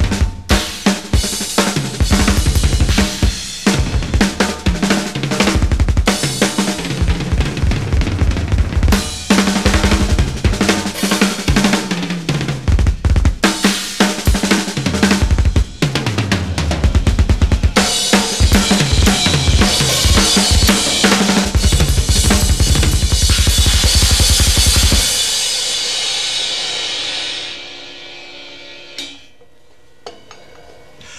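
Drum kit solo on a Premier kit with two bass drums: fast, even strings of double bass drum strokes under snare, tom and cymbal hits. Near the end it stops on a cymbal crash that rings and fades out over a few seconds.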